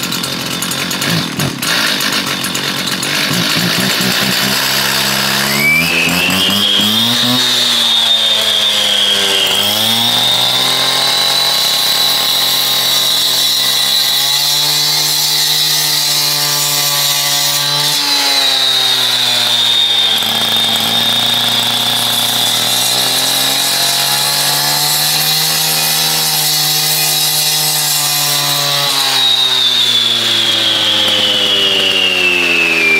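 Stihl TS 400 two-stroke cut-off saw running unevenly just after starting, then revving up to full throttle about five seconds in and cutting through a capstone block, with a steady high whine. Its engine speed dips a couple of times as the blade is pushed into the cut.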